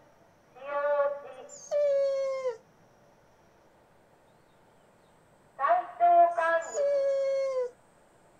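A Shiba Inu giving two bouts of drawn-out, whining howl-like vocalizations. Each bout is a few wavering notes that end in a long, slightly falling note.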